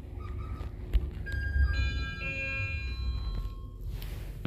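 ThyssenKrupp lift's arrival chime: several ringing tones sounding one after another from just over a second in and ringing for about two and a half seconds, over the low hum of the car. A short thump comes just before the chime.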